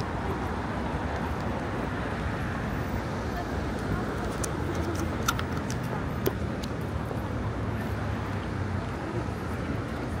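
Busy city street ambience: steady traffic rumble with pedestrians' voices in the background and a couple of sharp clicks near the middle.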